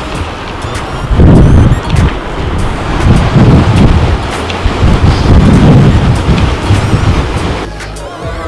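Wind buffeting the camera microphone in irregular gusts, loud and low, starting about a second in and dropping away near the end, with faint background music underneath.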